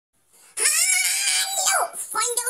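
A loud, high-pitched vocal squeal that starts about half a second in, is held on a nearly steady pitch for over a second, then drops in pitch and breaks off near the end.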